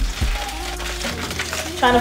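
Faint background voices and music, with two short low bumps near the start.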